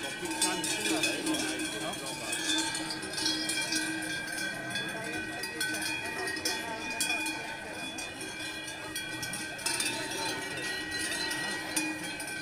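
Many cowbells ringing together without a break, over a murmur of crowd voices.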